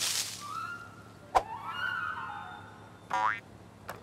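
Cartoon sound effects: a short whoosh of noise at the start, a sharp pop about a third of the way in, and a quick rising springy boing a little after three seconds, with soft sliding tones between them.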